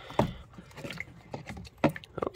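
Bottles and cans being handled and knocked together as a hand reaches among them for a bottle: a series of light clicks and knocks, with a sharper knock just after the start and another near the end.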